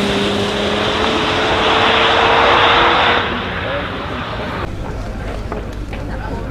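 Bentley Batur's 6.0-litre twin-turbocharged W12 engine pulling under load as the car drives away, its note rising slowly and fading by about three seconds in. It then gives way to a murmur of voices outdoors.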